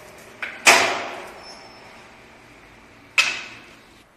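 Manual foot-operated guillotine mitre cutter chopping through wooden picture-frame moulding: a light click then a loud sharp chop under a second in, and a second sharp chop a little after three seconds, each dying away quickly.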